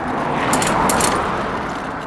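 A motor vehicle passing on the road: a rush of tyre and air noise that swells to a peak about a second in and then fades away.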